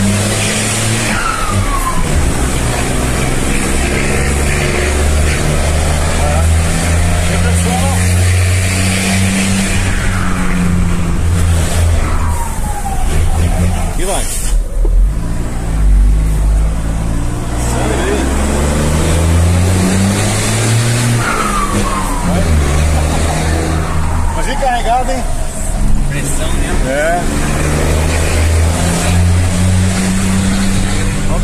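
Mercedes-Benz 1620 truck's turbodiesel engine pulling through the gears, heard from inside the cab, its pitch climbing and dropping back at each shift. The turbo, fitted with a comb in its intake to make it sing, gives a whistle that falls in pitch each time the throttle lifts, several times over.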